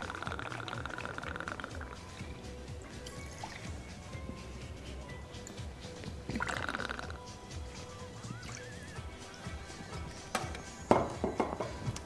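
Maker's Mark bourbon poured from the bottle into a metal jigger, one pour lasting the first two seconds and a shorter one about six and a half seconds in, over quiet background music. A sharp knock comes about a second before the end.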